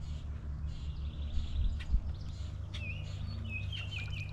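Birds chirping in short, gliding calls in the second half, over a steady low rumble, with a couple of light knocks about one and a half to two seconds in.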